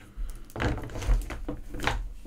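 Cable stripper being worked around the jacket of a shielded CAT7 Ethernet cable: a few sharp clicks and light knocks of the cable and tool against a wooden board.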